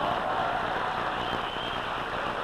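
Studio audience applauding, a steady wash of clapping.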